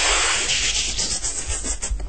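Beatboxed white noise: a loud, steady hiss made with the mouth, brightest at the start and then carrying on as a thinner, tinnier hiss as it is 'filtered' through a household sieve.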